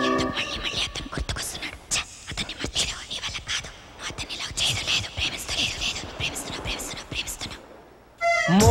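Breathy whispering in short bursts with scattered clicks, fading out near the end.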